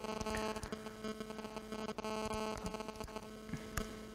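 Steady electrical mains hum with a stack of even tones, with a few faint scattered clicks from the laptop keyboard.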